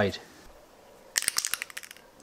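Aerosol spray-paint can being shaken: its mixing ball rattles in a quick run of sharp clicks lasting under a second, starting a little past halfway.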